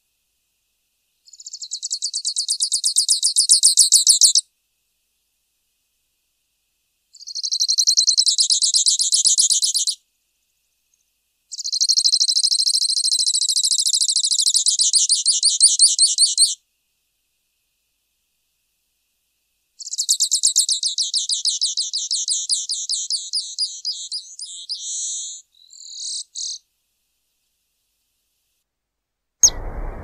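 Grassland yellow finch (Sicalis luteola) singing: four long, high trills of rapidly repeated notes, each a few seconds long with silent gaps between them, the last one breaking into a few separate notes. A sharp click just before the end, followed by a low hiss.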